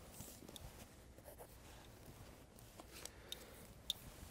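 Faint soft scratching and a few small ticks from a pencil and cloth tape measure being handled against a paper pad, in a quiet room.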